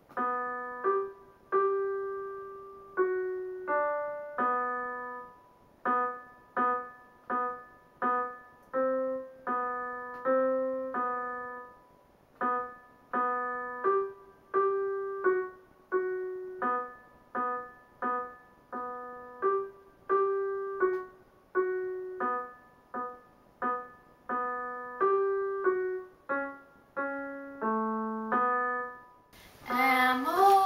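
Roland electronic keyboard played with a piano sound: a slow run of single notes and chords struck one after another, roughly one to two a second, each dying away before the next.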